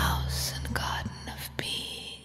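A woman's breathy whispered vocal over a low sustained bass drone, both fading away toward the end.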